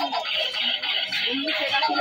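Battery-powered light-up toy sword playing its electronic music.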